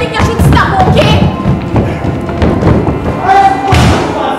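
Repeated thuds of feet and bodies on a stage floor during a staged scuffle between actors, the loudest near the end, with music and voices over them.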